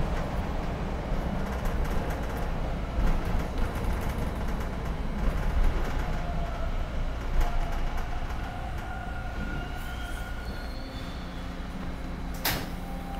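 TTC subway train heard from inside the car: a steady rumble while it runs. Near the end the rumble eases and thin high whines come in as the train slows into a station.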